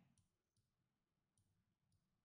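Near silence, with a few very faint, short clicks.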